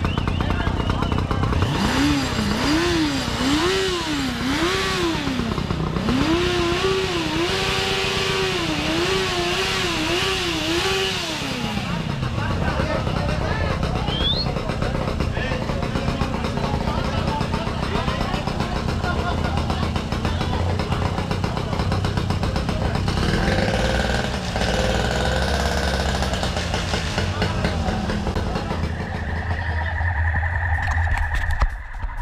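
A motorcycle engine revved in a long run of quick blips, its pitch climbing and dropping over and over for about ten seconds before it settles back. After that, engines running and people talking blend into a steady background.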